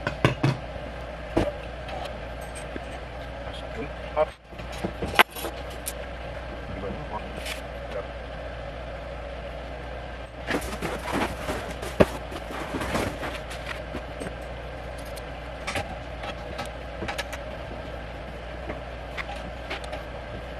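Hand work on a bench over a steady background hum: scattered clicks and knocks of small parts being handled, with a few seconds of cardboard rustling and clatter about ten seconds in as a cardboard box is searched for a part.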